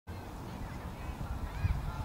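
Low, uneven rumble of wind on the microphone, with a few faint, distant calls that bend up and down in pitch.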